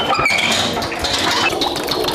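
Water splashing and spilling from a metal bucket as it is hauled up a well shaft on a rope, a steady noisy rush with no pitch.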